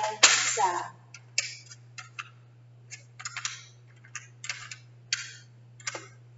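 Small letter tiles clicking as they are picked up and set one by one into a tile rack, about a dozen short, irregular clicks. A steady low hum runs underneath.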